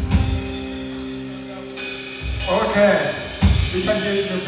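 Live band with a held chord on electric guitar and keyboard, and a drum kit playing hits with cymbal crashes near the start and again later. About halfway through, a voice over the sound system comes in on top of the band.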